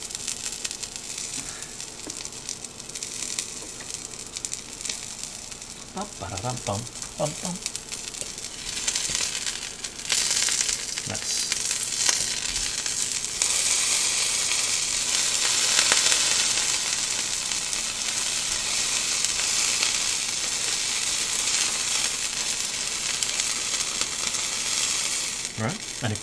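A small ground-meat burger patty sizzling as it fries in a skillet. The sizzle grows louder about ten seconds in, and louder again a few seconds later.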